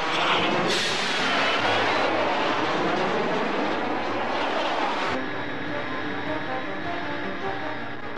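Cartoon sound effect of a flying vehicle's jet engine rushing in with a wavering whoosh, over dramatic background music. The engine effect cuts off about five seconds in, and the music carries on.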